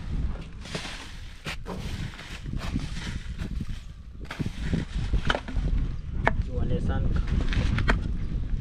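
A bamboo pole prodding and poking through a pile of trash, giving irregular scattered knocks and rustles, over a steady low rumble on the microphone.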